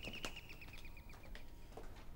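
Electric doorbell ringing in a fast, high, even trill that fades out about a second in, with a few light clicks of footsteps.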